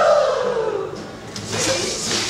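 A group of people making a noise with their voices together, one long sound that slides down in pitch over the first second, then breathy, hissing bursts.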